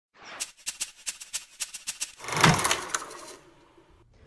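Opening sound design: a quick run of sharp ticks, about three or four a second, then a loud swelling whoosh about two seconds in that fades away over about a second.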